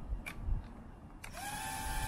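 Tiny brushless motors of an 85 mm whoop quadcopter spinning up at idle on the ground, a high steady whine with a slight upward rise that starts a little past a second in, over a hiss; a couple of light clicks come before it.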